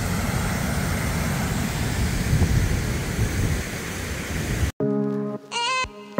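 Water rushing over a low mill dam and pouring out of the stone sluice beside it, a steady, even rush. Near the end it cuts off abruptly and music begins.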